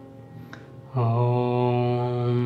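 Meditative background music. Soft held notes give way, about a second in, to a much louder low, steady chant-like drone with many overtones that holds on.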